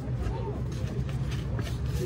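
Faint background talking over a steady low rumble.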